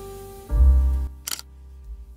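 Soft piano-like intro music, with a deep chord coming in about half a second in. Partway through comes a single camera-shutter click, used as a sound effect.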